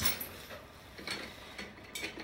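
A few light, spaced clicks and small knocks as a gold metal rod is handled in the hands, with its plastic wrapping being worked off.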